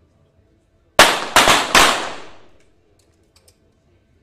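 Three small-calibre .22 sport-pistol shots in quick succession, about 0.4 s apart, from shooters firing together on the range. Each shot is a sharp crack, and the echo dies away over about a second.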